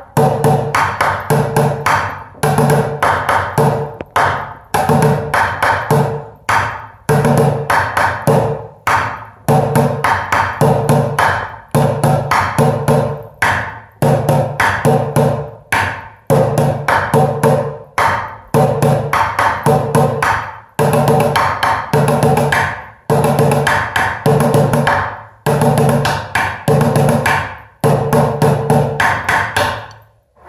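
Wooden drumsticks playing fast rhythmic patterns on upturned plastic buckets, in phrases about two seconds long with short breaks between them. The playing stops just before the end.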